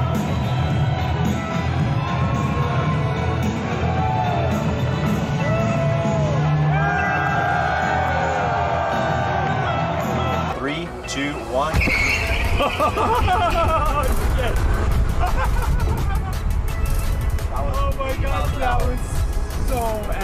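Background music mixed with shouting and cheering voices. About ten seconds in, a low rumble comes in beneath the voices.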